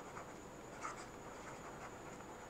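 Faint, light scratching of a stylus writing by hand on a tablet surface, a few short strokes in quick succession.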